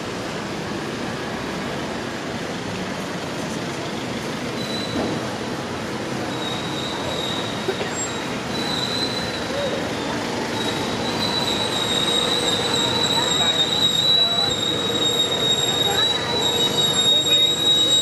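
Busy street ambience of traffic and passers-by, with a thin, high, steady whine that comes in about five seconds in and grows louder toward the end.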